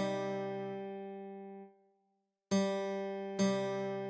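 Acoustic guitar playing the tab's melody as single plucked notes on the open G string. One note rings and fades away, a short gap follows, then two more notes come about a second apart.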